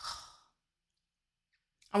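A woman's short sigh, one breath out lasting under half a second, followed by silence; she starts speaking again right at the end.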